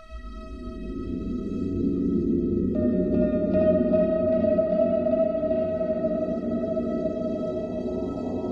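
Film score: a held tone, joined at the start by a deep low drone that swells steadily louder, with a brighter tone coming in about three seconds in.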